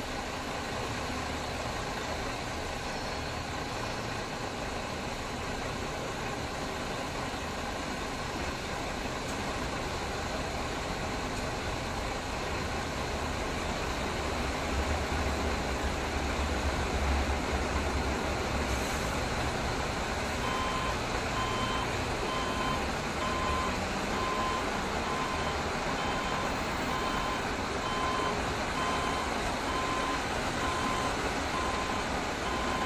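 City street traffic: a steady rumble of passing vehicles that swells in the middle. About two-thirds of the way in, a repeating electronic beep starts, a little over one beep a second.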